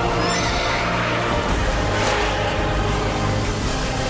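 Orchestral film score playing sustained, dramatic chords, with brief high animal cries over it about a third of a second in.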